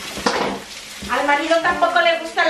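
Eggs frying in a pan with a light sizzle and a short scrape of stirring about a quarter second in. A voice comes in about a second in and is the loudest sound from then on.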